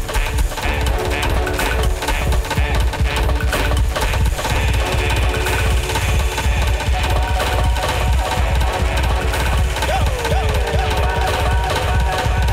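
Dance music mixed live by a DJ over a club sound system: a steady beat with heavy bass. About ten seconds in, two quick falling pitch swoops pass over the track.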